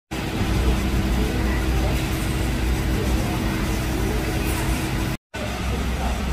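Steady low hum and rumble of factory machinery with a constant mid-pitched tone, breaking off abruptly about five seconds in.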